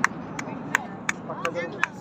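Aerial fireworks shells bursting: sharp, short bangs in a steady run, about three a second.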